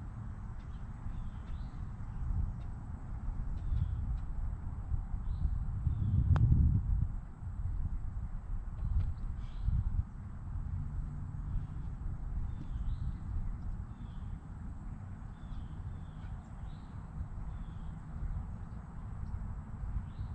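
Wind buffeting the microphone as a steady low rumble, gusting strongest about six seconds in, with small birds chirping in short calls throughout. A single sharp click comes at the height of the gust.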